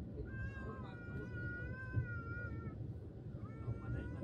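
Moving passenger train heard from inside the coach: a steady low running rumble. Over it come two long, high, wavering squeals, the first lasting over two seconds and the second starting near the end.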